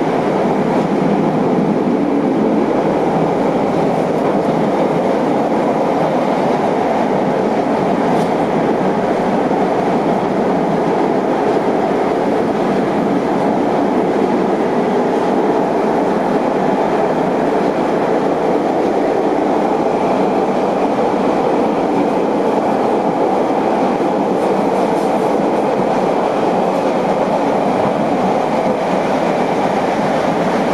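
Interior noise of a CTA Blue Line rapid-transit car running at steady speed: wheels on the rails and undercar equipment, an even, unbroken noise.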